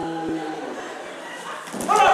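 A performer's long, held cow moo, done as a stage cow's dying call, trailing off about half a second in as the cow collapses. Near the end a sudden loud vocal cry breaks in.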